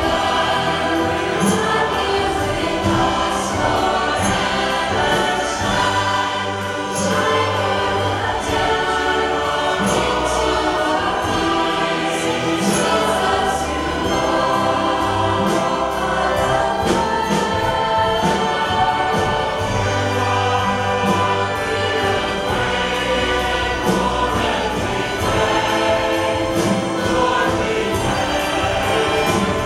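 Large choir singing with orchestral accompaniment, a full sound that holds steady throughout.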